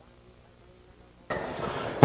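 Near silence with a faint low hum, then about a second and a half in a sudden jump to a steady hiss of broadcast background noise, just ahead of the race caller's voice.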